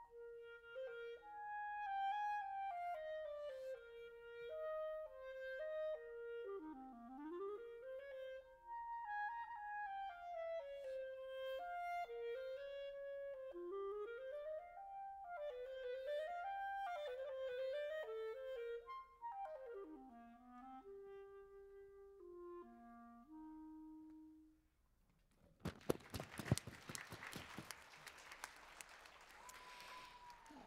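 Solo clarinet playing a flowing melody with quick runs that sweep down low and back up, ending on a few low held notes about 24 seconds in. Audience applause follows.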